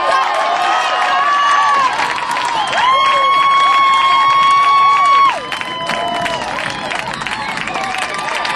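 Crowd and sideline players cheering and shouting, with long held high yells, the loudest lasting about two and a half seconds in the middle.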